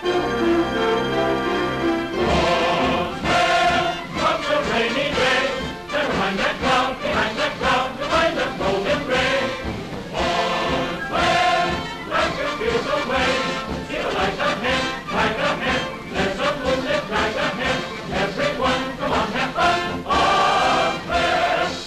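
Orchestral film score with a choir singing. It opens on held low chords for about two seconds, then breaks into a brisk, rhythmic passage with a steady beat.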